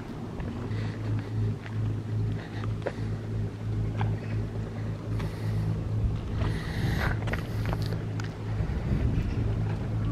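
An engine running steadily with a low, even hum that dips briefly near the end, with scattered clicks and rustles over it.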